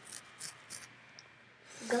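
A few faint, short scratchy sounds in the first second, then a voice saying 'uh' near the end.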